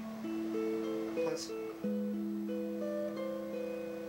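Telecaster-style electric guitar playing a short Baroque-style passage: a held bass note under moving upper voices, with the bass stepping down about two seconds in. The harmony runs through an A7 to D move.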